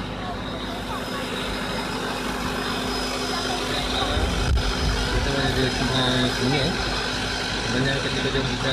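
A steady low mechanical hum, like an idling engine, with people talking in the background, the voices getting clearer in the second half.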